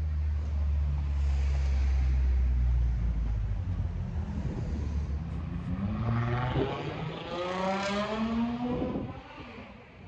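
Street traffic: a low rumble for the first few seconds, then a passing motor vehicle accelerating, its engine pitch rising over about three seconds before fading.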